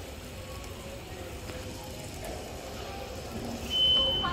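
Shallow water of an indoor water feature running over a stone bed, with a steady low hum underneath. A short high beep sounds near the end.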